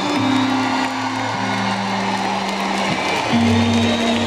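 Live band backing music playing sustained low chords that change every second or two, under crowd noise from a large concert audience.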